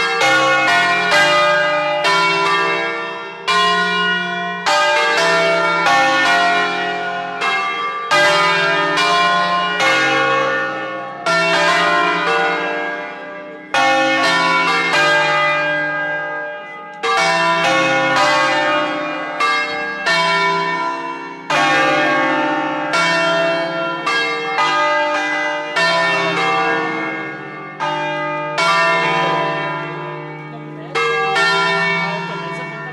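A ring of five bronze church bells (cast by Angelo Ottolina of Bergamo in 1950, tuned to a slightly flat D-flat) swung full circle by hand with ropes and wheels, playing a bell concerto. Strikes come one to two a second in a changing sequence, each note ringing on under the next, with a few brief lulls.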